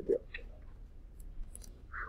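A short spoken phrase at the start, then a few faint scattered clicks and light rustling over a low room hum.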